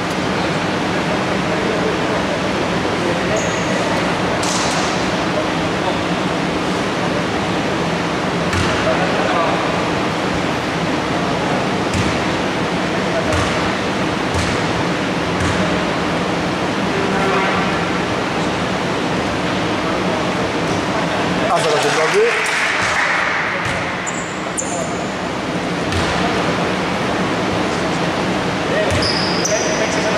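Basketball hall during a free-throw stoppage: a basketball bouncing a few separate times on the hardwood court, with short high sneaker squeaks, over a steady hall hum and voices.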